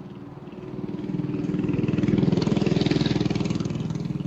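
Motorcycle engine passing by, growing louder to its loudest about two to three seconds in, then fading away.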